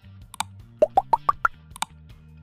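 Subscribe-button animation sound effect: a click, then five quick plops rising in pitch one after another, then a second click, over soft background music.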